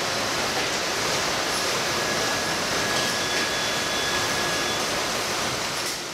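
Steady machinery noise of an industrial bakery's crate-handling line: an even hiss with faint, thin high whines for a few seconds in the middle.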